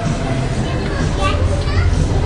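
Children's voices and chatter, with short high squeals and calls through the middle, over a steady low background hum.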